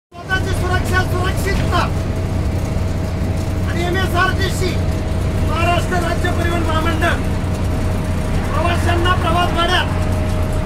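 Bus engine running, heard from inside the passenger cabin: a steady low drone with a constant whine over it. Voices talk over it in short stretches.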